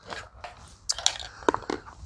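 Plastic clicks and rustling from handling a portable jump starter and its jump-lead plug as the plug is fitted into the unit's socket, with a few short sharp clicks about a second in and halfway through.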